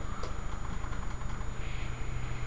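Steady low hum of room equipment, with a few faint clicks of laptop keys as a command is typed and entered.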